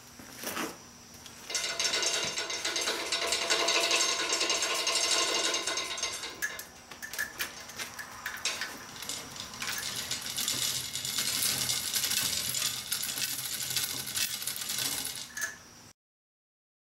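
Manual chain hoist (chain fall) worked by hand: the hand chain rattles through the hoist with rapid metallic clicking in two long spells, a few seconds of scattered clinks between them, as the heavy load is moved with small, precise adjustments.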